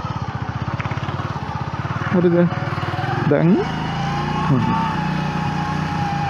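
Small motorcycle engine running at low revs with a fast, even pulse, then pulling smoother with a rising whine as the bike picks up speed on the throttle.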